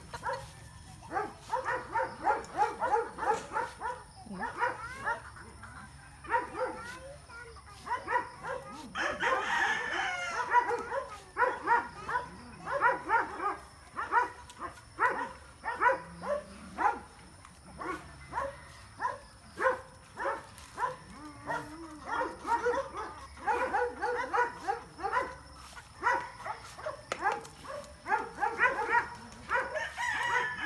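Farm animals calling: a fast run of short, repeated calls, with a longer rising call about nine seconds in.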